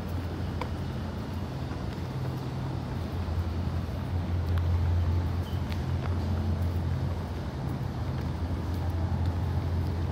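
A steady low mechanical hum with a few faint ticks over it.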